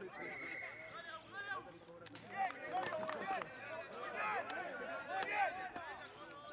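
Rugby players shouting and calling to each other during open play, in many short rising-and-falling cries, with a couple of sharp knocks mid-way.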